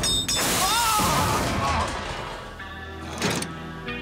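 Cartoon crash effect of a giant hammer striking a metal machine: a loud, noisy blast lasting nearly two seconds, then a single thud a little after three seconds, over background music.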